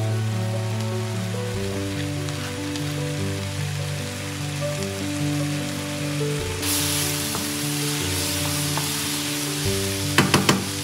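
Food sizzling in oil in a frying pan, the sizzle growing louder about two-thirds of the way in. Soft background music with sustained notes plays throughout.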